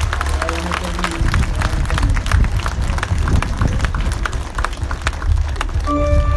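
A crowd clapping irregularly and stirring, over a low rumble.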